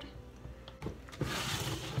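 A couple of light knocks, then a brief rustling, rubbing noise: the handling of soap-making utensils and table items.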